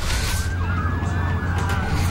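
Several police sirens wailing at once over a deep steady rumble, with a brief whoosh at the start.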